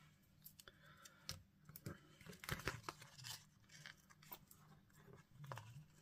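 Faint rustling and small crackly clicks of hands handling paper and peeling foam adhesive dimensionals off their backing sheet, loudest a little past halfway.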